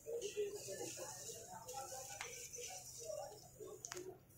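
Faint background voices of people talking, with two sharp clicks, one about halfway through and one near the end.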